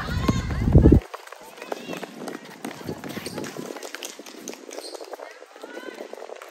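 Basketball players running on a hard court, with footsteps and short knocks, while high-pitched girls' voices call out. A loud low rumble underneath cuts off suddenly about a second in.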